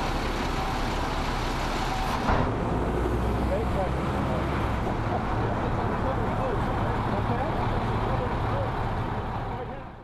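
City street ambience: steady traffic noise with a low engine hum and faint voices, fading out at the end.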